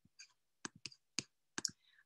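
Faint computer mouse clicks: about six short, sharp clicks at uneven intervals.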